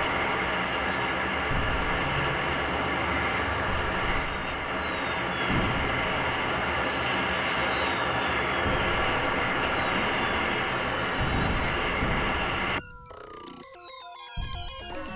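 Experimental synthesizer noise-drone music: a dense, noisy wall of layered held tones with repeated falling whistle-like glides high up. About thirteen seconds in it drops suddenly to a quieter, sparser texture of held tones and slow falling glides.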